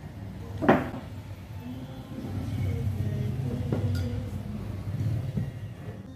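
A single sharp knock, like a hard object striking the table, about a second in. It is followed by a low rumble lasting about three seconds.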